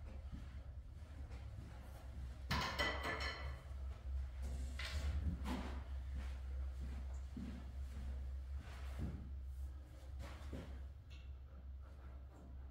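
A steady low room hum with faint scuffs and knocks from a pool player moving around the table with his cue. The loudest is a brief rattling scrape about two and a half seconds in, with a smaller one a couple of seconds later.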